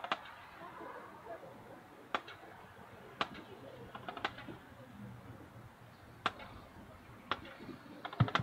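Quiet outdoor background with a handful of sharp clicks, about one every second or so at uneven intervals.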